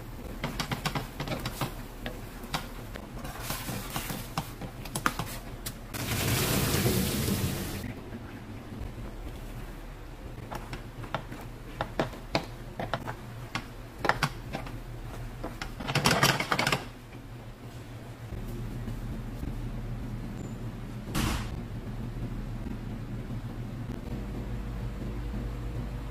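Wooden spatula clicking and scraping against a stainless steel pan while stirring sauce and penne. Two longer bursts of hissing noise come about six seconds in and around sixteen seconds.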